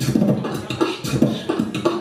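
Solo beatboxing into a microphone: a quick, steady rhythm of vocal kick, snare and hi-hat sounds, about four hits a second, with pitched bass tones between them.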